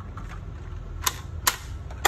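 Two sharp hard-plastic clicks, about half a second apart and about a second in, as the body of an MN82 RC pickup truck is worked loose and lifted off its chassis.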